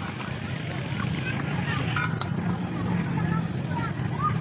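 Busy outdoor playground ambience: a steady low hum under distant people's chatter, with a couple of light clicks about two seconds in.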